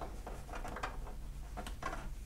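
Tarot cards being handled on a wooden tabletop as the deck is picked up: a few faint, irregular clicks and taps of card edges.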